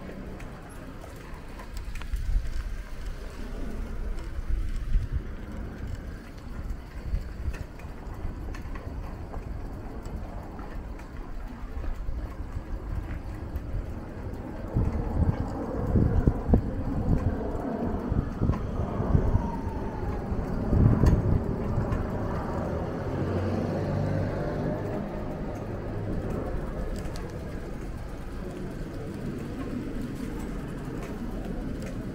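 Street ambience heard while walking along a narrow shopping street: steady low rumbling with faint traffic, swelling louder a few times, most strongly near the middle of the stretch.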